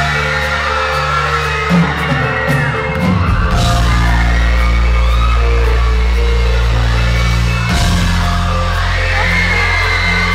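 Live band playing a slow pop song's intro, with held bass notes that change about three seconds in and again near eight seconds, while a crowd screams and whoops over the music.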